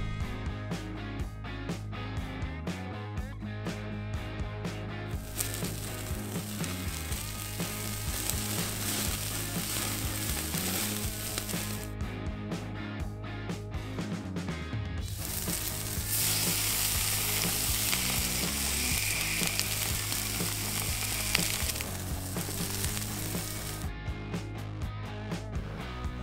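Steaks sizzling on a charcoal grill over background music. The sizzling comes in two long stretches, one starting about five seconds in and one a little after the middle.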